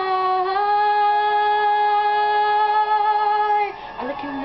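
A woman singing one long, steady held note for about three and a half seconds, then breaking off shortly before the end.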